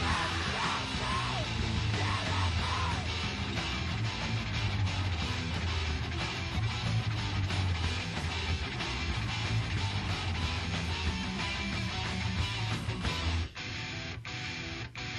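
Loud guitar-driven rock song, band recording with electric guitar, bass and drums. About half a second before the end the full band drops away to a quieter, thinner passage with a few sharp hits.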